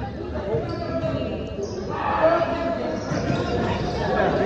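A basketball being bounced on a gym's hardwood floor as the shooter dribbles before a free throw, with spectators' voices in the gym.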